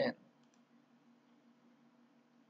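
The tail of a spoken word, then a computer mouse click, two quick ticks about half a second in, over a faint low room hum.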